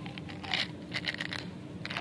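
Small round hard candies clicking and rattling as they are tipped out of a plastic bottle-shaped candy container into a palm, in a few short bursts about half a second and a second in.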